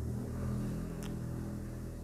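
A faint, low, steady hum with a single small click about a second in.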